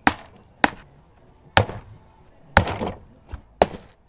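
Rubber mallet knocking five times, about once a second, driving small metal bolt-hole rings into a plastic-and-metal engine rocker (valve) cover from its underside.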